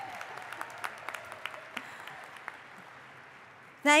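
Applause from a large crowd, many hands clapping at once, fading away over a few seconds and ending just before speech resumes near the end.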